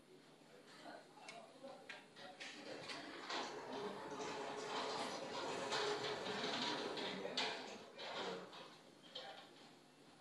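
A Skeeter microdrill handpiece running with a faint, steady whine and hiss that builds after a few seconds and fades near the end. This is the freshly fitted replacement drill being test-run, which turns true.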